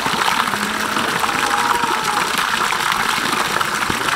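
A stream of water pouring from a height into a concrete trough and splashing steadily into the pooled water.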